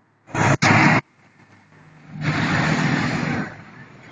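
A city minibus passing close by: engine and road noise swell up loudly for about a second and fade away. A short, loud noisy burst comes just before, near the start.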